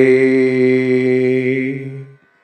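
A man chanting a Sanskrit prayer verse, holding one long steady note that fades out near the end.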